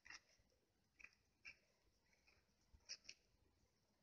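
Near silence: room tone with a few faint, short clicks, one near the start, two more over the next second and a half, and a close pair about three seconds in.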